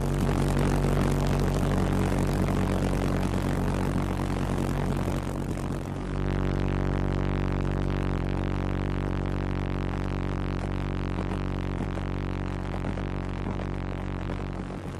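V-1 flying bomb pulsejet engine running on a test stand, a steady low buzzing drone from its rapid pulsed combustion. The sound dips briefly about six seconds in, then carries on at the same pitch.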